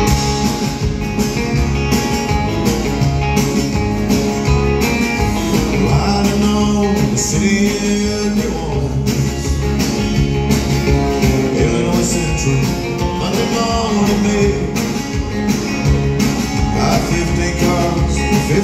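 Live country band playing an instrumental intro through a theatre PA: a drum kit keeping a steady beat under electric and acoustic guitars and keyboard.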